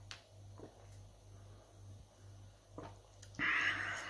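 A person drinking juice from a glass: faint swallowing clicks over a low steady hum, then a loud breathy exhale near the end as the glass comes away from the mouth.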